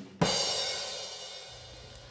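A single cymbal crash in the background music, struck about a fifth of a second in and ringing away to quiet over a second and a half.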